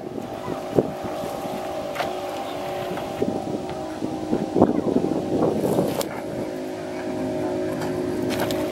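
A boat's engine running with a steady, even hum. A few brief noisy bursts come through in the middle.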